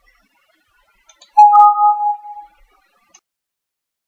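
A single chime about a second and a half in: two clear tones, one low and one higher, struck together with a sharp start and fading out within about a second.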